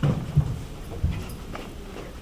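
Quick footfalls thudding on a hard floor: three heavy thumps, right at the start, about half a second in and just after a second, then lighter knocks.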